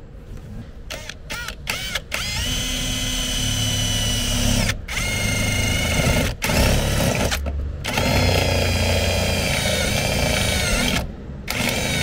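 Cordless drill with a step drill bit cutting holes through the vehicle's sheet steel: a few short trigger blips, then a steady motor whine in four runs of a couple of seconds each with brief pauses, stopping about a second before the end.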